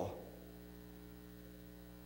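Steady electrical mains hum, a low, even buzz made of several fixed tones, with faint hiss beneath it.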